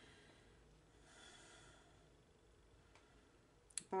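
Near silence: room tone, with a faint breath about a second in and a tiny click near the end.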